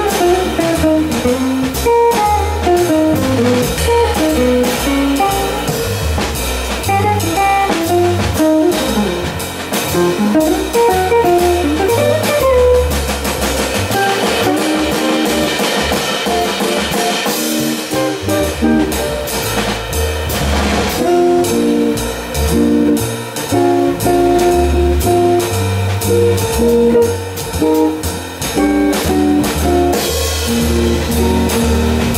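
Jazz guitar taking a solo in fast single-note lines, backed by stepping bass notes and a drum kit with cymbals; the tenor saxophone is silent.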